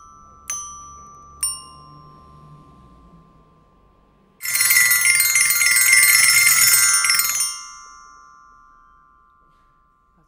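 Solenoid-driven glockenspiel: two single metal bars are struck by the solenoid plungers, about half a second and a second and a half in, each ringing out. About four and a half seconds in, a loud, rapid flurry of many bars struck in quick succession lasts about three seconds, then rings on and fades away.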